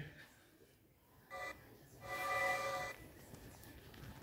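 Quiet electronic phone tones: a short chord of steady tones, then a longer one lasting about a second, like a ringing tone.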